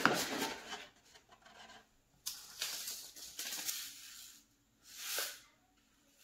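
Thin plastic milk jug being handled, its cut top fitted back onto the soil-filled base: rubbing and crackling of plastic in three separate bouts, the longest in the middle.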